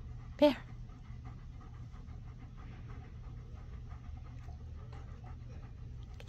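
Black German shepherd panting steadily with its mouth open. A single short, loud vocal sound comes about half a second in.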